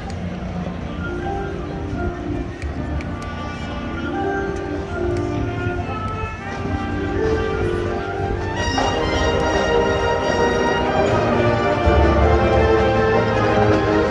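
College marching band playing on the field, winds and drumline together, growing steadily louder. The full band comes in strongly about two-thirds of the way through, with deep bass notes near the end.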